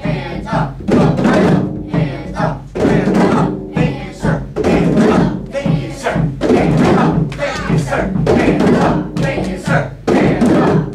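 A group of children playing hand drums (djembes and congas) in a repeating low–high–low stroke pattern with a rest on the raised-hands beat. Voices chant along and repeat the phrase about every two seconds.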